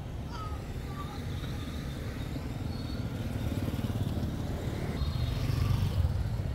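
Street traffic: a low rumble of passing motorbike engines that grows louder near the end as one comes close.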